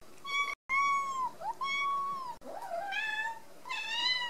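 A cat meowing repeatedly: about five high, drawn-out meows in quick succession, each bending in pitch. The fourth is lower and rises.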